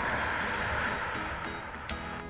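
A long breath exhaled as a soft rushing hiss that slowly fades, over quiet background music.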